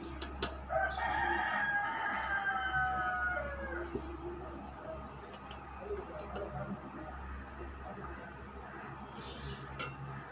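A rooster crowing once: a single call of about three seconds that drops in pitch at the end.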